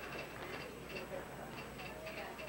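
Faint, indistinct voices over a steady low hum, with scattered light ticks.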